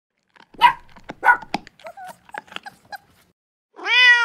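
A dog barks twice, sharply, then gives a string of shorter, fainter yips and whines. Near the end a cat begins a meow.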